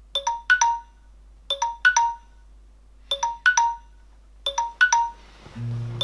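Smartphone alarm tone: a short phrase of three or four bright chiming notes, repeated four times about every one and a half seconds. Music with a low bass comes in near the end.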